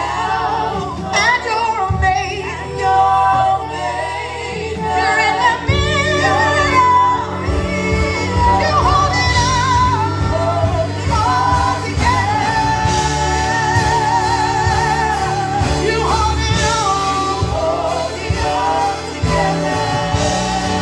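Praise team singing a gospel worship song into microphones over live band accompaniment, with a long held note with vibrato about midway.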